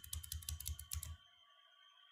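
Computer keyboard typing: a quick run of keystrokes that stops a little over a second in.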